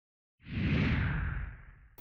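A whoosh sound effect for a title logo, starting about half a second in with a low rumble underneath, then fading away over about a second.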